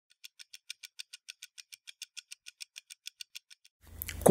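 Faint, rapid, evenly spaced ticking, about six or seven sharp clicks a second, fading out near the end: a ticking sound effect under an opening title card.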